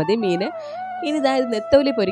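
A person talking, with a long steady drawn-out tone behind the voice that slowly drops in pitch.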